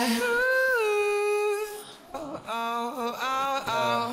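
Isolated lead vocal with no backing: a male voice holds a high sung note that slides down a step about three-quarters of a second in and fades out, then after a short gap near the middle sings a few more notes.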